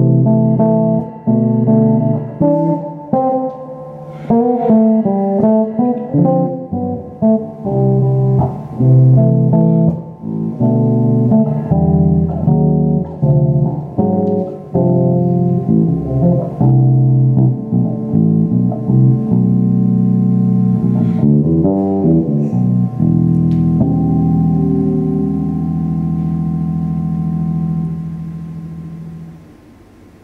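Solo electric bass guitar improvising jazz: short phrases of plucked notes with quick runs. It ends on a long held note that fades out near the end.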